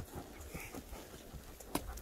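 A horse walking on a dirt and grass trail: soft hoofbeats, with a sharp knock at the start and another near the end.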